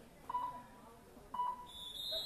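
Referee's whistle: two short peeps about a second apart, then a longer, higher blast starting near the end, under faint crowd chatter.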